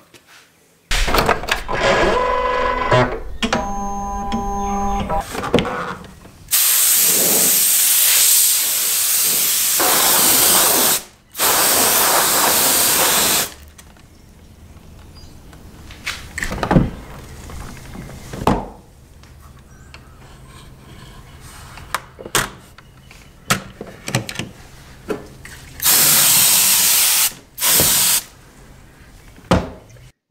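Several long bursts of hissing, each a few seconds long, from a spray or blast of air, broken by scattered clicks and knocks as a plastic scanner film holder is handled. A short run of steady electronic tones sounds about two to five seconds in.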